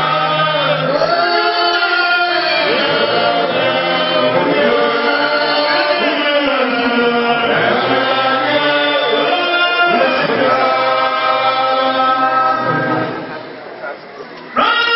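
A group of men singing a church chant together through handheld microphones, with long held notes. The singing dies down briefly near the end.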